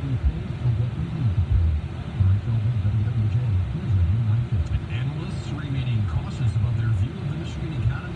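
A man's voice talking, low and muffled, inside a car's cabin over the low rumble of the car idling in traffic.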